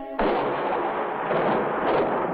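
Thunder in the film soundtrack, cutting in suddenly just after the sung and instrumental notes stop and carrying on as a loud, even roll.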